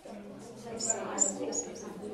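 A man's long, hesitant "uhh" held on one pitch. A few short high squeaks come about a second in.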